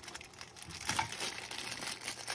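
Small clear plastic bag crinkling as fingers pick it open, a run of quick irregular crackles, loudest about a second in.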